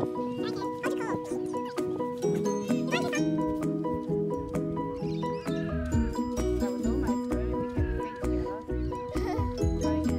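Background music with a steady beat and a singing voice; a deep bass line comes in about six seconds in.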